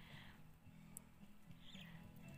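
Near silence: faint background with a low steady hum and a single brief tick about a second in.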